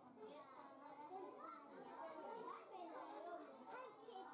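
Faint, indistinct chatter of several overlapping voices, children's voices among them.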